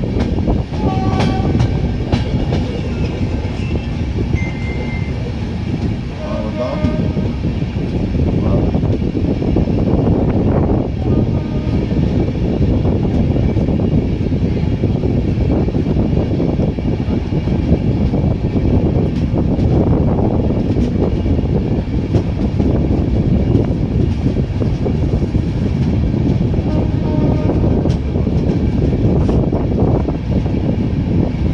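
Express passenger train running, heard from its open doorway: a loud, steady rumble of wheels on the track, with a few short high tones in the first several seconds.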